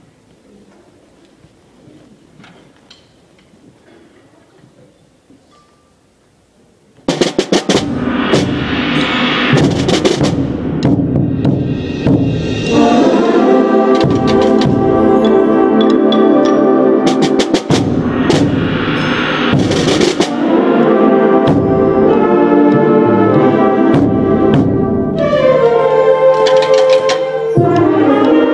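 A quiet waiting hall for about seven seconds, then a middle school concert band comes in loudly all at once: full brass and woodwind chords over sharp percussion hits, with more hits and held chords after it.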